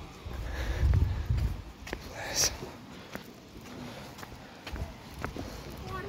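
Footsteps on a stone-slab path, with a loud low rumble about a second in and a short hiss a little past two seconds.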